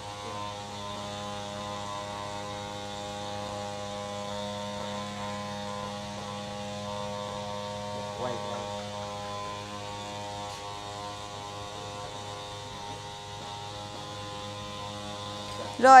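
Steady electrical hum: a low drone with a ladder of buzzing overtones, unchanging throughout, with a faint short sound about eight seconds in.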